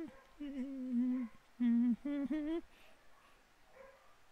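A man humming a tune with his mouth closed in two short phrases, falling quiet about two and a half seconds in.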